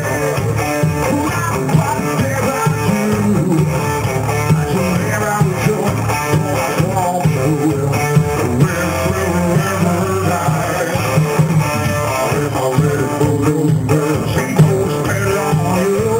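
Live blues-rock band playing an instrumental passage: electric guitar and bass guitar over drums, loud and continuous.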